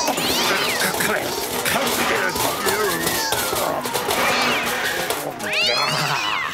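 Cartoon cat yowling and meowing, with many rising and falling squeals, over lively background music.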